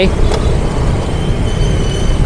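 Steady low rumble of wind and engine and street-traffic noise heard while riding a motorbike through city traffic. A faint, high steady tone comes in about one and a half seconds in.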